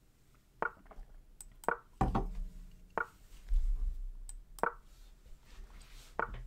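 Four clacks of an online chess board's piece-move sound effect, spaced unevenly over about four seconds as quick blitz moves are played. Two low dull thuds come in between.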